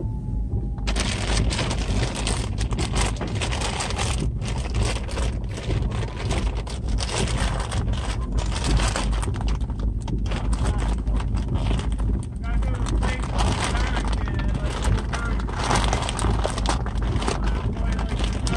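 Plastic poly mailer bag being ripped open and crinkled by hand: a dense, continuous run of crackles and rustles over a steady low rumble.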